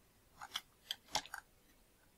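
About five faint, quick computer keyboard key clicks within about a second, as text is typed and entered.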